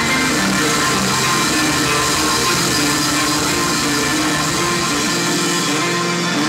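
A live rock band playing an instrumental passage with no singing: electric guitar, bass guitar, drum kit and Hammond organ, with sustained held notes over a steady backing.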